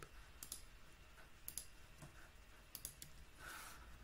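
Faint clicking of a computer mouse and keyboard: three short pairs of clicks, about a second apart.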